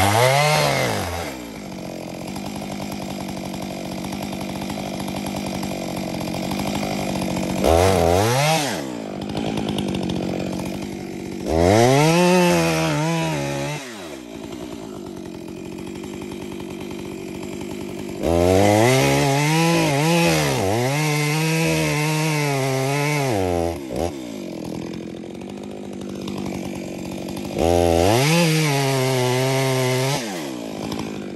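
Stihl chainsaw cutting into a large tree trunk, most likely the back cut behind the face notch. It idles between five bursts of full throttle, and its pitch sags and recovers under load within each burst. The longest burst runs for about five seconds near the middle.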